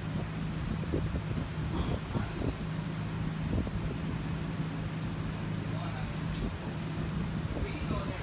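Steady low electrical hum from idle stage amplifiers, under indistinct voices and a few small clicks and knocks. No music is playing.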